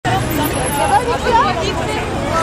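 A large outdoor crowd chattering and calling out, many voices overlapping, with the low rumble of vans driving slowly past underneath.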